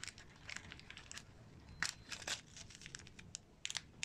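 Hands handling a plastic rig case and its green tray inside a cardboard shipping box: faint, scattered clicks and rustles of plastic and cardboard.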